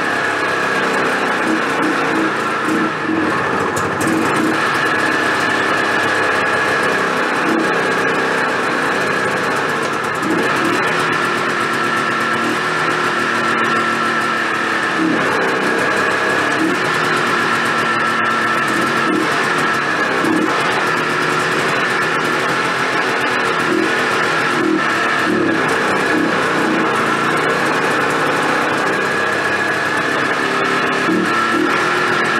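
Background guitar music over the steady running of a 1982 Yamaha Bravo BR250 snowmobile's small two-stroke engine, with no break through the whole stretch.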